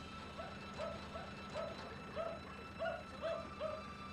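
An animal calling over and over in the dark, a short pitched note repeated about twice a second, with a faint steady low hum underneath.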